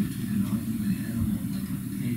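A person speaking away from the microphone, asking a question, the voice distant and muffled over a low steady room rumble.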